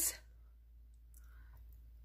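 Near silence: room tone with a steady low hum and a couple of faint clicks about a second in.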